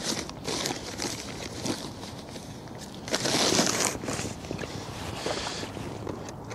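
Rustling and small clicks of hands rummaging through a tackle bag for fresh ragworm bait, with a louder rustle about three seconds in.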